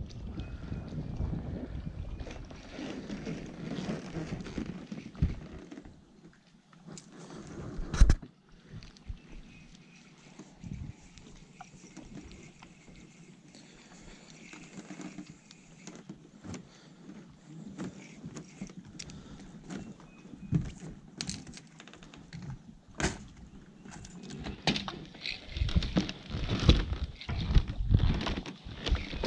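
Rustling handling noise for the first few seconds, then scattered sharp knocks, the loudest about eight seconds in. Near the end come a run of footsteps on a dock's plank decking.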